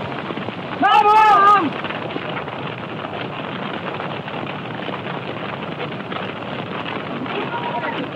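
A steady crackling, rushing fire noise, with one short, high voiced call from a man about a second in.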